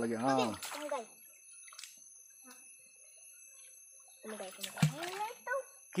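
People's voices talking at the start and again near the end. In the quiet stretch between them, faint splashing and sloshing of shallow stream water as people wade and handle woven bamboo fish traps.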